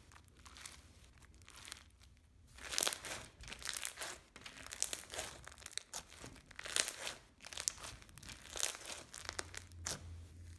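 Crunchy bead-filled slime being stretched, folded and squeezed by hand, giving irregular crackling and crunching. It is sparse for the first two seconds or so, then denser and louder from about three seconds in.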